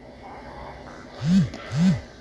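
A smartphone vibrating twice for an incoming notification: two short low buzzes about half a second apart, each rising and falling in pitch as the vibration motor spins up and down.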